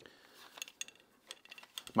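Faint, scattered light clicks and ticks from the plastic parts of a VR headset strap being handled and worked at where a part is clipped in.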